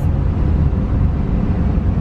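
Steady low rumble and hiss of a car, heard from inside its cabin.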